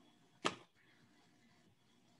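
Faint room tone with a single short click or knock about half a second in.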